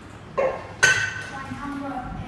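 Electronic chime from a random-number-picker program as a new number is drawn: two sudden hits about half a second apart, the second louder, its tones ringing out and fading.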